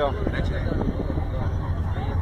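Steady low rumble of a car's engine and tyres heard from inside the cabin while driving, with faint talk over it.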